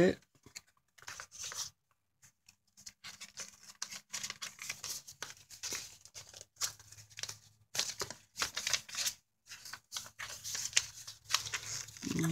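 Paper rustling and crinkling in irregular short bursts as the pages of a handmade paper book, cut from brown paper bag and thin card, are leafed through and handled; sparse at first, busier from about three seconds in.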